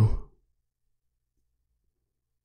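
The tail of a man's spoken phrase trails off in the first half second, then near silence.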